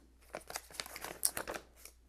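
A folded paper instruction leaflet being unfolded by hand, rustling and crinkling in a run of small irregular crackles that starts about a third of a second in.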